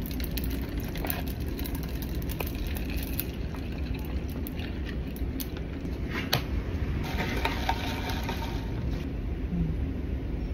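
A drink poured from a pouch into a plastic cup of ice, the ice crackling, with a few sharp clicks from the plastic cup and lid being handled.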